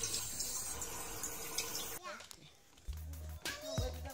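Tap water running steadily into a bathroom sink, filling a bundle of water balloons. About halfway through it cuts off suddenly, and background music with deep bass notes and drum hits follows.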